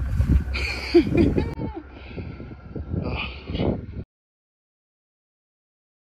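Indistinct voice sounds over a low rumble. The audio cuts off abruptly about four seconds in.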